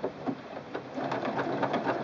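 Singer Quantum Stylist 9960 computerized sewing machine running on its own feed, stitching out a programmed decorative butterfly motif: a fast, even run of needle strokes that gets a little louder about a second in.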